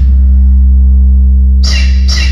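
Music played at very high volume through a pair of DJ speaker cabinets loaded with 15-inch subwoofers, with very heavy bass: a held deep bass note dominates, and the rest of the track comes back in near the end.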